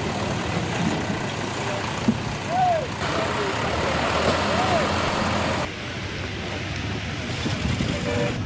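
Diesel engine of a backhoe loader running steadily while it clears landslide debris from the road edge, with faint voices in the background. The sound drops in level about two-thirds of the way through, at a change of shot.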